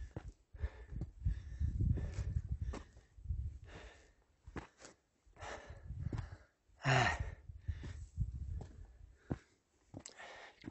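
A man breathing hard and gasping while climbing a steep trail at high altitude, with uneven panting breaths and one louder voiced gasp about seven seconds in. Short scuffs of footsteps or the pole are heard between breaths.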